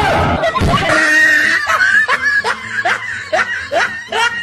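A small child laughing hard in short repeated bursts, after a high-pitched squeal, with a sudden low swoosh at the very start.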